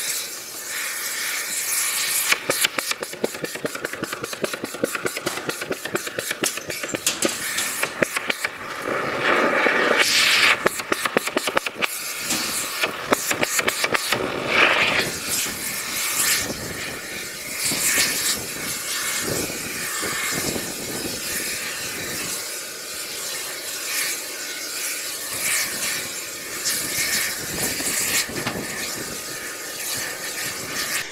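Thermite rail-welding gear at work at a rail joint: a steady roaring hiss of running machinery. Rapid crackling runs through the first half and then eases to a more even roar.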